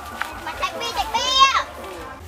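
Young girls' playful voices, with one long high-pitched cry about a second in whose pitch rises and then falls.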